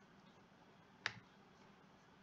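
A single sharp computer mouse click about a second in, with a softer tick right after, over near silence.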